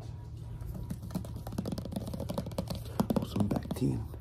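Fast ASMR tapping and handling of small objects with the fingers: a quick, uneven run of clicks and taps that grows louder in the second half.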